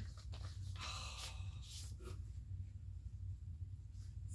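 Paper rustling and crinkling as an envelope is opened and a card pulled out, over about the first two seconds, then only a faint steady low hum.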